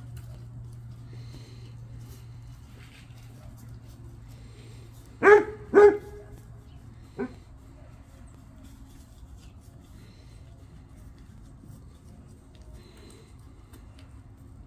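A dog barking: two loud barks about half a second apart about five seconds in, then a single fainter bark a second and a half later.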